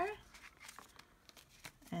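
Faint rustling and light scraping of paper and card as small envelopes are slid into a folded paper pocket.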